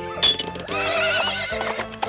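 A horse whinnying, one long wavering neigh, over background music, just after a sharp clank near the start.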